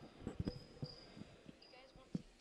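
Faint gym sound on a hardwood basketball court: scattered soft thuds and a few short high squeaks, typical of a ball bouncing and sneakers on the floor, under faint distant voices.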